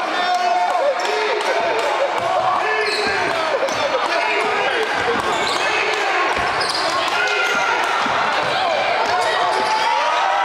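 Indoor youth basketball game: many overlapping voices of players and spectators calling out and chattering, with a basketball bouncing on the hardwood floor, all echoing in a large gym.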